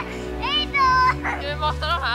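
Children's high-pitched shouts and squeals, several short calls in quick succession, over steady background music.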